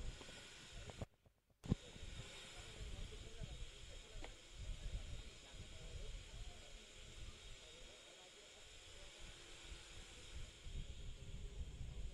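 Faint open-air ground ambience: a low, uneven rumble with a steady hiss. The sound cuts out completely for about half a second, about a second in.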